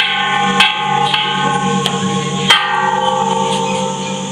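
A row of hanging bronze temple bells struck one after another, about five strikes in four seconds. Each strike leaves a ringing, layered tone that carries over the next, and the strikes at the start and about two and a half seconds in are the loudest.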